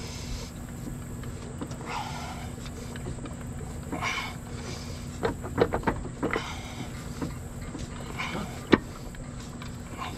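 A torque converter is turned by hand and worked onto the input shaft and pump of an AW4 automatic transmission, giving light metal clicks about five to six seconds in and a sharper click near the end. A few heavy breaths of effort come with it, over a steady low hum.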